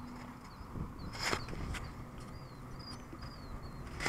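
Faint outdoor ambience: a low rumble of wind on the microphone with a few short, high bird chirps, and a single sharp knock a little over a second in.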